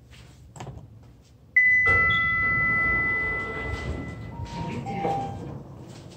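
Kone elevator arrival chime: a single bright ding sounds about a second and a half in and rings on for nearly three seconds. It is followed by two shorter, lower tones, the second lower than the first.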